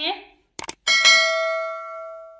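Subscribe-button animation sound effect: two quick mouse clicks, then a bright bell ding about a second in that rings on and fades slowly.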